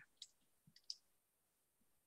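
Near silence with two faint clicks in the first second: a computer mouse clicking while text is selected in a code editor.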